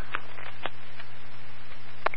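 Fire department radio scanner feed between transmissions: a steady radio hiss with a low hum under it and a few faint clicks.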